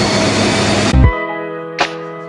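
A steady hiss that cuts off abruptly about a second in, as background music starts with a deep bass hit and sustained notes, followed by a sharp drum hit near the end.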